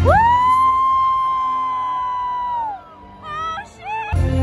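A single high voice holds one long note. It scoops up at the start, holds steady for about two and a half seconds, then falls away. A few short rising yelps follow near the end.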